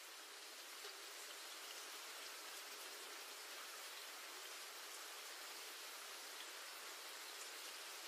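Faint, steady hiss of light rain, slowly growing louder.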